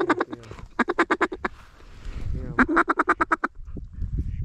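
Duck call blown in fast runs of quacks imitating a mallard hen: a short burst at the start, then a run about a second in and another near three seconds in.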